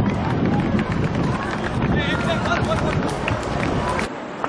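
Outdoor soccer match sound: indistinct shouting voices and crowd chatter over a steady background rumble, with no clear words.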